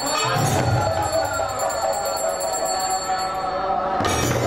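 Devotional kirtan music with khol clay drums and ringing bells. Deep drum strokes come near the start and again near the end, with bell tones ringing on between them.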